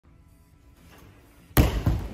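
Loud thud of a gymnast landing from a backflip on a balance beam about one and a half seconds in, followed by a second, smaller knock just before the end.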